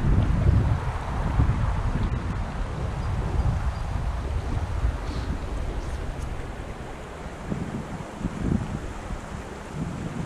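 Wind buffeting the camera microphone in a low rumble over the sound of running creek water, loudest in the first second or so and easing afterwards.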